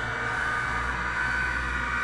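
A steady edited sound-effect drone: a hiss and low rumble with a high, steady ringing tone.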